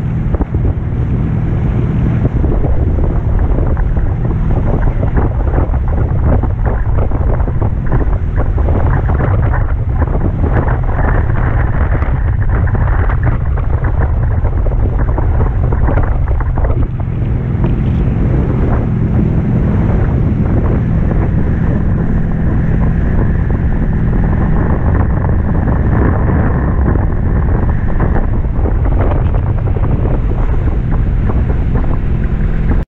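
Heavy wind buffeting the microphone, mixed with rushing water and spray as an inflatable banana boat is towed at speed through a speedboat's wake. The noise is loud and steady, with a brief dip a little past halfway.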